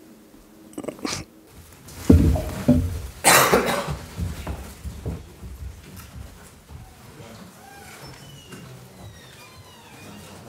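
Knocks, thumps and rustling of people getting up from a press-conference table: chairs being pushed back and bumps near the table microphones, loudest about two to four seconds in, then dying away to quieter room noise.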